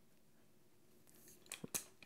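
Near silence, then a few small, sharp clicks about one and a half seconds in: a pin being pushed through the hole of a Quick Stand decoy stand's leg stake and popping into place.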